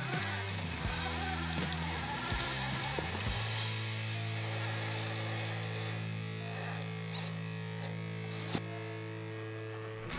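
Background music with guitar: long held chords that change about three seconds in.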